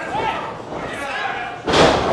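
A wrestler slammed back-first onto the canvas of a wrestling ring by a spinebuster: one loud slam of the ring floor near the end, ringing out briefly.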